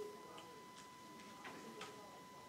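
Faint, irregular ticks of a stylus tapping a touchscreen during handwriting, about four in two seconds, over a steady thin electrical tone.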